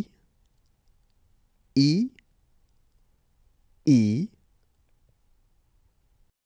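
Speech only: a voice saying the French letter name 'I' twice, about two seconds apart, in an alphabet drill.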